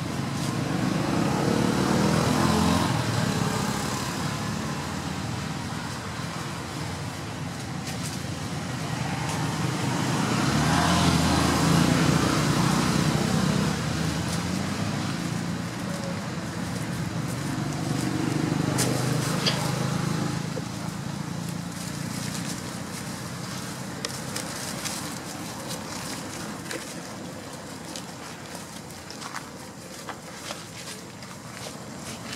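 Motor traffic passing on a nearby road: three slow swells of vehicle noise, each rising and fading over several seconds, about two seconds in, near the middle, and again a few seconds later. Scattered faint clicks and rustles come in toward the end.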